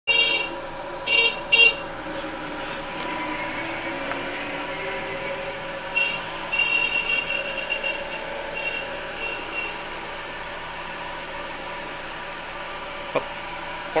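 Horn tooting: three short, loud toots in the first two seconds, then a run of shorter, fainter beeps from about six to ten seconds in, over a steady background hum.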